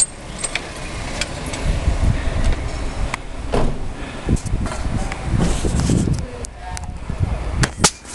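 Uneven low rumble and scattered clicks and knocks from a handheld camera being carried while walking, with a sharp knock near the end as the camera is swung round.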